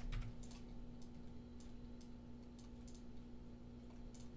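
About seven light, irregularly spaced clicks from working a computer's keyboard and mouse, over a faint steady low hum.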